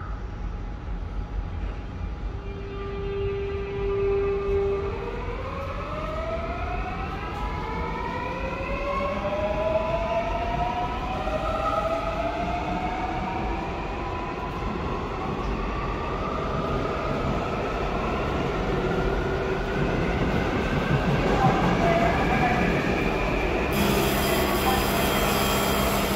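Seoul Subway Line 4 electric train pulling away from the platform: a steady tone, then the motor whine rising in pitch in a series of upward glides as it accelerates, with wheel and running noise building.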